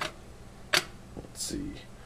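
Two light metallic clicks, at the start and again under a second later, as small homemade aluminium-can alcohol stoves are picked up and set down on an electric stove's coil burner. A brief murmur of voice near the end.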